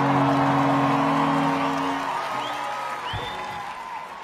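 A live rock band's last chord rings out and fades away about two seconds in, over a festival crowd cheering with a few whistles. A single low thump comes about three seconds in.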